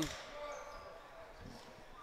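Faint basketball gym sound: distant voices on the court and in the stands, with a basketball bouncing once on the hardwood floor about a second and a half in.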